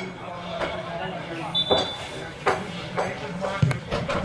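Voices on a football pitch, with a short, high referee's whistle about halfway through and a few dull thumps, the loudest near the end, around the taking of a free kick.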